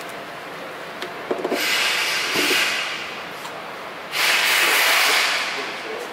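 Plastic protective film rustling and rubbing, in two bursts of hissing noise about a second and a half each, preceded by a few small clicks.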